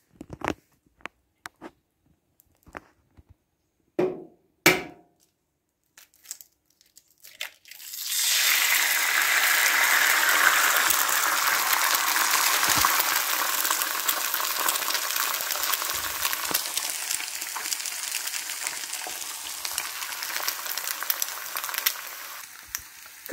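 A few scattered knocks and clicks, then about eight seconds in a sudden loud sizzle starts as an egg fries in a hot stainless steel pan, going on steadily and slowly easing off.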